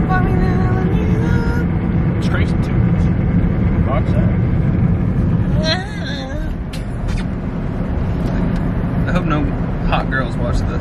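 Cabin noise of a Jeep on the move: a steady low rumble of engine and road noise.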